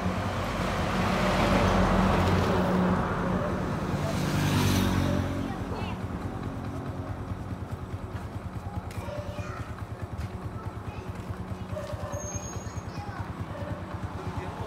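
A large vehicle passes on the road during the first five seconds, loudest about two seconds in and again just before five seconds. Under it, and alone afterwards, a Honda Win 100 motorcycle idles with a steady, fast pulse.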